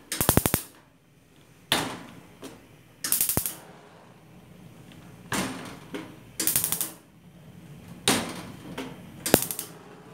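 Esmaltec Ágata gas stove's built-in spark igniter ticking in four quick bursts of rapid clicks, about three seconds apart, as the burners are lit one after another. A short burst of noise comes between the click trains.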